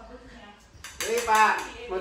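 A few light clinks of kitchenware, metal and crockery knocking together, about a second in.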